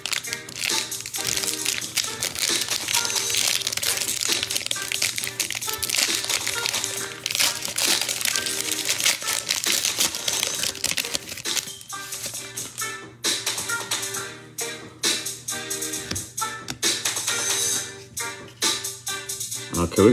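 Foil wrapper of a trading-card pack crinkling as it is torn open and handled, dense for the first twelve seconds or so, then giving way to lighter, separate clicks of the cards being handled. Background music plays throughout.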